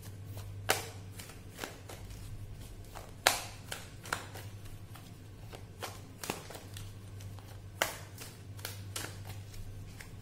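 Tarot cards shuffled by hand: about a dozen sharp, irregularly spaced snaps of cards against each other, over a low steady hum.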